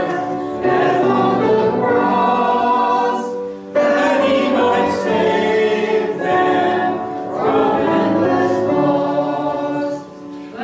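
A church congregation singing a hymn together, in held notes, the phrases broken by short pauses for breath.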